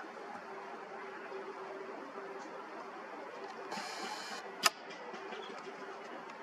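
Camcorder's lens zoom motor whirring briefly about four seconds in, followed by a sharp click, over the camera's faint steady hum and hiss.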